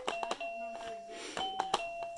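Baby Einstein Glow & Discover Light Bar toy keys pressed one after another, each press a plastic click followed by a held electronic note. About four notes of differing pitch pick out a melody.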